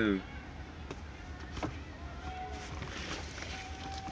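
Low steady rumble of a car heard from inside the cabin, with a few faint clicks and faint distant calls over it.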